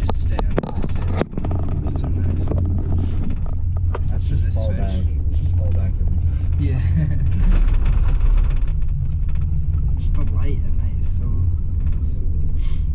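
Steady low rumble inside a moving gondola cabin running on its haul rope, with a few sharp clicks in the first second or so. The rumble swells about seven to eight seconds in as the cabin passes over a lift tower's sheaves. Low voices come and go underneath.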